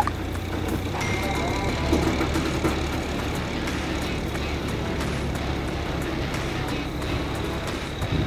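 Kenworth K500 heavy-haul truck's diesel engine running with a steady low drone as the loaded rig creeps slowly across a steel bridge.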